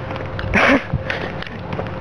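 Rustling handling noise from a handheld camera on the move, with a short hissing burst about half a second in.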